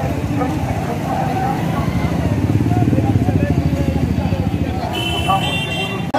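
A motorcycle engine running close by, its pulsing rumble loudest around the middle, over the voices of a marching crowd.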